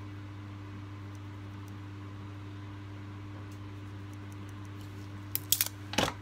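Steady low workshop hum, with a few sharp clicks and rattles a little after five seconds in.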